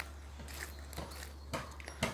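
Faint footsteps of a person walking, a step about every half second, over a low steady hum.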